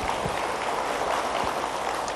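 Audience applauding: a seated crowd clapping their hands in a steady patter.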